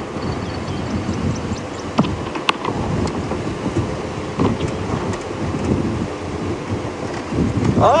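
Open safari vehicle driving along a rough dirt track: a steady rumble of engine, tyres and wind, with a few sharp knocks and rattles from the bumps.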